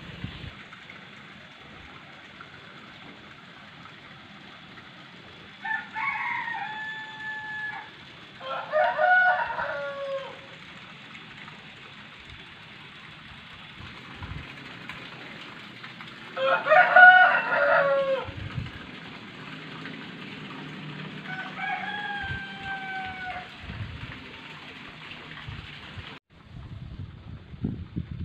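Rooster crowing four times, each crow about two seconds long, the second and third louder than the others.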